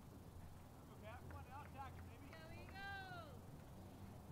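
Faint distant voices calling out, a few short calls and then one longer drawn-out call about three seconds in, over a low steady background hum.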